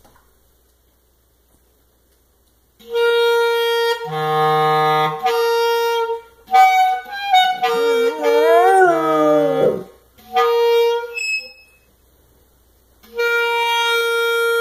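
Clarinet holding long, steady notes with short breaks, starting about three seconds in. In the middle a dog howls along with it for about two seconds, its pitch wavering up and down.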